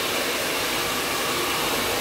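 Handheld hair dryer blowing steadily while blow-drying hair.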